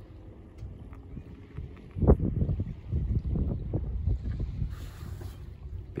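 Wind buffeting the microphone: a low, uneven rumble in gusts, growing much stronger about two seconds in.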